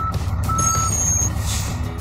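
Truck reversing alarm beeping in a single steady tone, each beep a little under half a second long and repeating about every 0.8 s, over a low, steady rumble.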